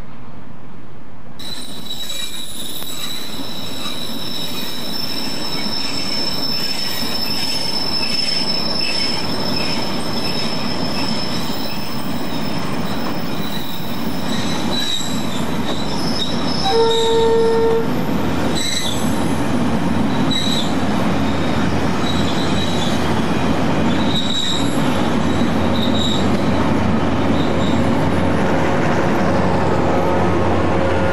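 Freight train of bogie tank wagons rolling past: a steady rumble and clatter of wheels on rail, with a high-pitched wheel squeal from about a second in. One horn blast of about a second sounds a little past the middle, and the train noise grows louder toward the end.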